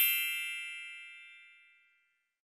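A single bright metallic ding, struck once, ringing with several clear high tones that fade away over about two seconds.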